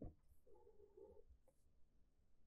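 Near silence: quiet room tone during a pause in speech.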